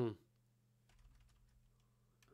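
Faint computer keyboard typing: a short run of key clicks from about half a second to nearly two seconds in, over a steady low electrical hum.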